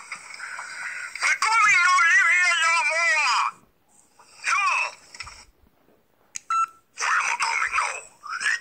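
A man's voice in a high-pitched, wavering wail with no clear words for about two seconds, then a shorter gliding vocal sound. Near the end comes a short electronic beep, followed by more talking.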